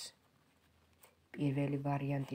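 A person speaking in Georgian, broken by a pause of about a second of near silence with one faint click in it; speech resumes past the middle.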